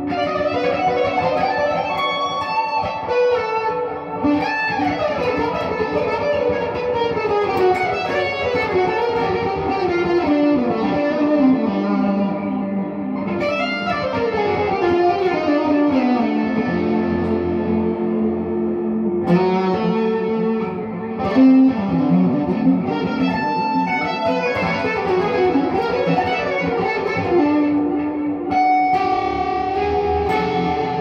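1978 Ibanez Artist 2630 semi-hollow electric guitar played through a 1979 Fender Deluxe Reverb amp: fast single-note lines with wide leaps and several long descending runs.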